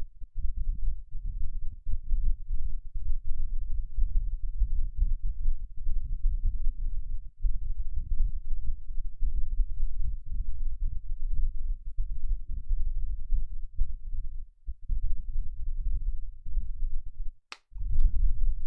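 Low, irregular rumbling noise that rises and falls continuously, with one sharp click near the end.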